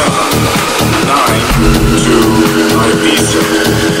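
Electronic dance music DJ mix at 126 BPM: two techno and house tracks playing together over a steady beat. A sustained low synth chord with a deep bass note comes in about one and a half seconds in.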